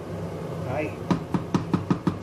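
Wooden spoon knocking against the side of a stainless steel cooking pot while stirring. About five quick sharp knocks come in the second half, over a steady low hum.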